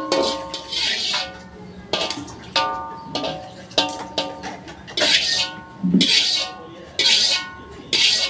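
A metal spatula scraping and knocking around the inside of a metal wok in repeated strokes, about once a second. Each stroke gives a gritty scrape and a short metallic ring.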